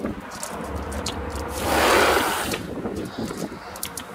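Someone stepping up through a travel trailer's entry door: scattered light clicks and knocks, with a rush of noise lasting about a second in the middle.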